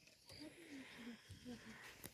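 Near silence: faint outdoor ambience with a few soft, short, low sounds in the first part.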